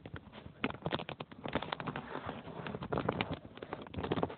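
Handling noise from a tablet's leather protective case rubbing and knocking against the microphone as the tablet is moved: a dense run of irregular clicks and scuffs.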